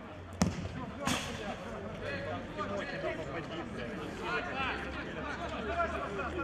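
A futsal ball kicked hard with a sharp crack, followed less than a second later by a second impact; players shouting across the pitch.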